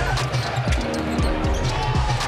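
A basketball dribbled several times on a hardwood court, under background music.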